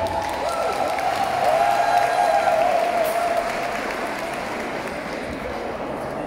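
Audience applauding at the end of a live band's song, the clapping slowly dying down. A long wavering tone sounds over it in the first half.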